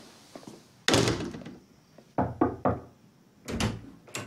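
A door thuds shut about a second in, then three quick knocks on a wooden door, and a further door thump near the end.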